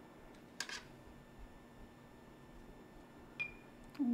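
Quiet room tone with small handling noises: a brief scratchy rustle just under a second in and a short click near the end.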